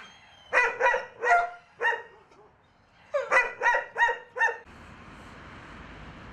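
Caged shelter dog barking: a run of four sharp barks, a pause of over a second, then five more in quicker succession. About three-quarters of the way in the barking gives way to a steady, quieter background hum.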